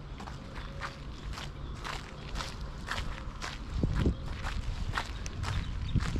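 Footsteps of one person walking on a packed dirt path, at a steady pace of about two steps a second.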